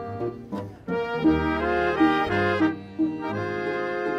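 A Bavarian folk-music ensemble playing, with accordion and brass (trumpet and trombones) over a double bass line. The phrases are broken by two short breaks, the first about a second in.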